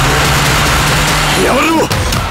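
A car driving, a steady low engine hum under a loud rush of road and wind noise, which cuts off just before the end. A short voice-like sound is heard near the end.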